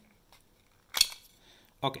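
A single sharp click about a second in, with a few faint ticks before it, from a metal pry tool working the plastic shell of an earbud charging case apart.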